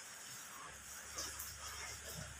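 Light drizzle pattering steadily, a faint even hiss with a few small drips. A low steady hum comes in under it about a second in.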